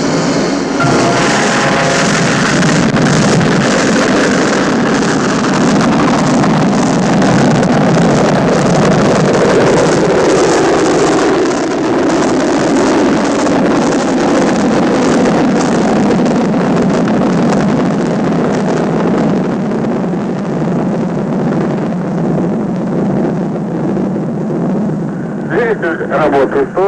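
Soyuz rocket engines at liftoff: a loud, steady roar that sets in suddenly and slowly deepens and eases as the rocket climbs away.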